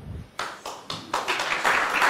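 Audience applause: a few separate claps about half a second in, swelling into steady applause from about a second in.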